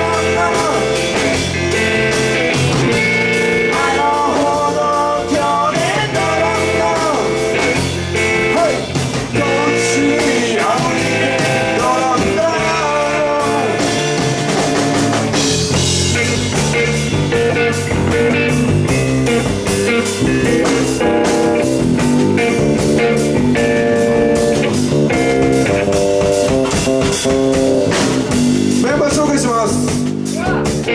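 Live three-piece rock band playing a Latin-style groove: electric guitar, electric bass and drum kit, with a male lead vocal in places.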